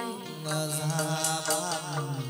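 Chầu văn (hát văn) ritual music: a voice holds long notes that slide and waver in pitch over a band with clicking percussion.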